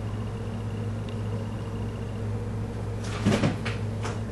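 A plastic eyeshadow palette being handled, giving a brief rattle and rustle about three seconds in, over a steady low hum.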